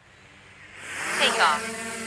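DJI Mini 4 Pro mini quadcopter's propeller motors spinning up for takeoff. The sound builds from nothing, rises in pitch about a second in, and settles into a steady hum with a hiss as the drone lifts off and hovers.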